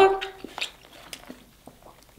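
A woman's voice holding a drawn-out word that fades out about half a second in, followed by faint scattered clicks.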